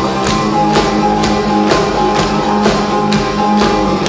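A live band plays an instrumental passage, loud and dense as heard from the crowd. Drums keep a steady beat of about two strokes a second under sustained held chords.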